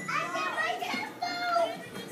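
Young children's voices: high-pitched calling and chatter as they play, with no clear words.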